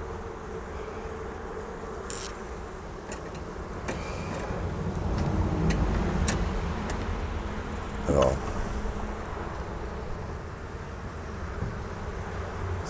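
A colony of Sicilian (Sicula) honeybees in an opened leaf hive humming steadily with a conspicuous roar ("auffälliges Brausen"), swelling a little in the middle. The beekeeper takes this roaring as a bad sign, and reads it as the sound of a queenless colony.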